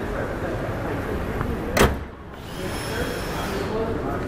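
Steady background noise in an open garage bay, with one sharp click a little under two seconds in, after which the noise briefly drops away.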